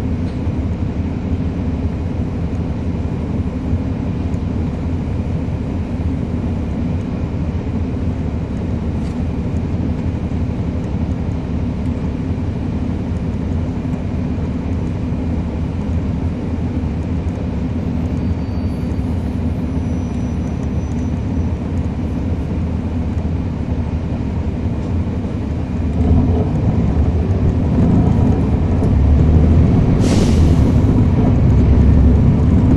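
Cummins ISL9 diesel engine of a 2011 NABI 416.15 transit bus heard from on board, running with a steady low drone. About 26 seconds in it grows louder and deeper as the bus pulls harder.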